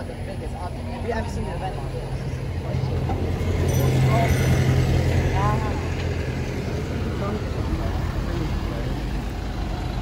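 Red London bus driving past close by, its engine a steady low rumble that swells about three seconds in and then settles, over street traffic noise. Faint voices of passers-by can be heard under it.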